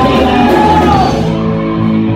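Live punk rock band at full volume: distorted guitars, drums and vocals. About a second in, the cymbals and drums stop and a held guitar chord rings on.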